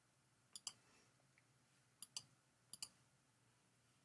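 Computer mouse button clicking: three quick double clicks, each a press and release, about half a second in, two seconds in and near three seconds in, over near silence.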